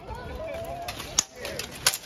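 Two sharp metallic clashes of steel swords in armoured combat, about two-thirds of a second apart, the second the louder.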